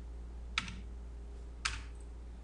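Two single clicks of computer keyboard keys about a second apart, over a steady low hum.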